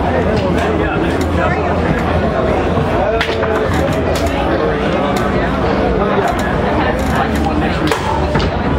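Indistinct overlapping conversation and chatter of many people in a busy hall, with occasional sharp clicks.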